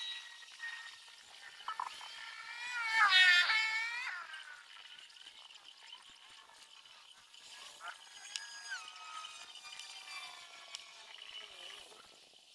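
High-pitched animal calls: one loud, wavering call about three seconds in, then fainter whistling calls and a call that drops in steps about eight seconds in.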